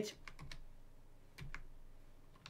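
Computer keyboard being typed on: about half a dozen faint, unevenly spaced keystrokes.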